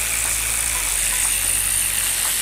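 A steady, fairly loud machine noise with a low hum underneath and a high hiss on top, with a few faint light clicks.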